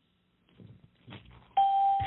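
A steady electronic beep on one pitch, with a fainter high overtone, starting about a second and a half in over a telephone line's hiss: a conference-call tone.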